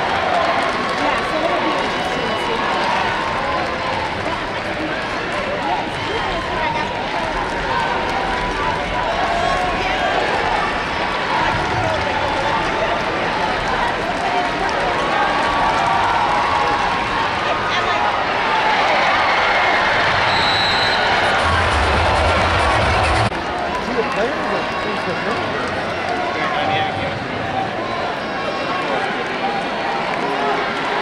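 Arena crowd noise at a basketball game: many voices cheering and shouting continuously, with the ball bouncing on the hardwood court. The crowd swells about two-thirds of the way through, then drops off suddenly.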